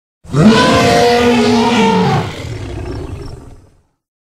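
Film sound effect of a Tarbosaurus roaring: one roar that starts a moment in, holds loud for about two seconds with a rising-then-falling pitch, then sinks into a quieter, rougher tail that dies away shortly before the end.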